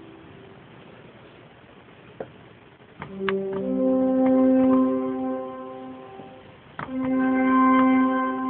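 Bedient mechanical-action (tracker) pipe organ: a held chord dies away in the church's long reverberation, then after a click about three seconds in a new sustained chord sounds for some three seconds and fades, and after another click near the end a further chord begins.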